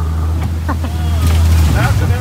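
A 125 hp outboard jet on a small aluminium river boat running hard up a shallow riffle. It is a loud, steady low hum with water rushing against the hull, growing louder partway through.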